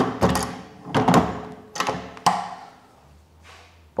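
Several hard knocks and clunks as a drilling head is seated and clamped into the drilling unit of a Blum MINIPRESS top boring machine.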